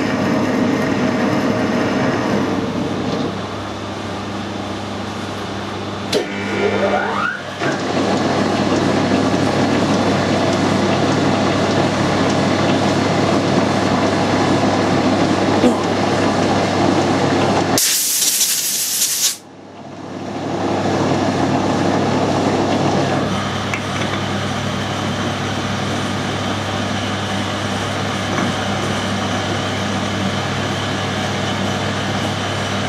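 Metal lathe running under power while a single-point tool cuts an 8 TPI screw thread: a steady machine hum with gear whine. About eighteen seconds in there is a brief loud hiss, after which the sound drops away and builds back up.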